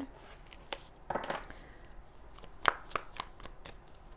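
A tarot deck being shuffled by hand: a short rustle of cards a little after one second in, and a few sharp card snaps or taps scattered through.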